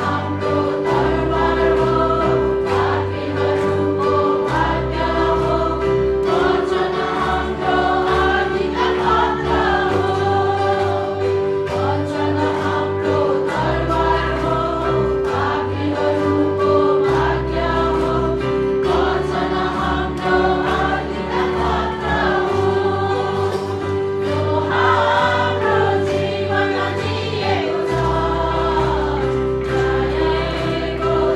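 Group of women singing a Christian worship song in unison into microphones, backed by electric guitar and bass, with a held note running under the voices and bass notes changing every second or two.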